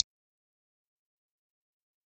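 Digital silence, apart from a brief click at the very start.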